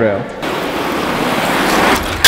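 Urethane skateboard wheels of a prototype carbon-fiber concept board rolling over a smooth concrete floor, a steady rolling rumble that grows slightly louder as the board nears the rail.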